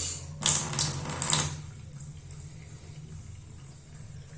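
Tap water running into a ceramic washbasin, just switched over from cold to hot: loud for about the first second and a half, then settling to a thin, quieter steady stream.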